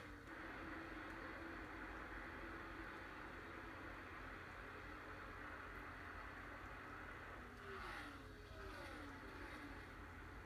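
NASCAR Cup Series V8 race cars running flat out, heard faintly through a television's speaker as a steady engine drone. About eight seconds in, cars pass by with a falling pitch.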